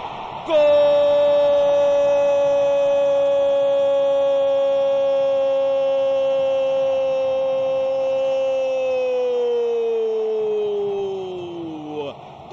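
A male football commentator's long drawn-out "Goool!" cry for a goal just scored, starting about half a second in. It is held on one high pitch for about eight seconds, then slides down and fades as his breath runs out.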